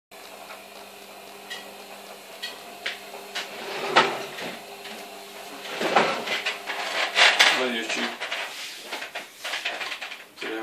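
Handling noise: a series of sharp knocks and clicks, then a louder stretch of clatter and rustling about six seconds in, over a steady low hum. A brief voice sounds near the end.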